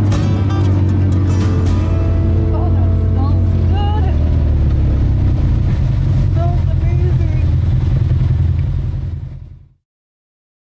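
Side-by-side UTV engine running with a steady low drone while driving along a dirt trail, with a few short gliding pitched sounds over it; the sound fades out near the end.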